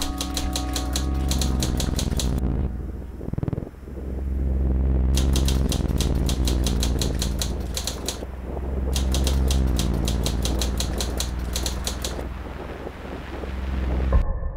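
Typewriter-style typing sound effect: three runs of rapid key clicks, about five a second, matching text typed onto the screen, over a steady low drone.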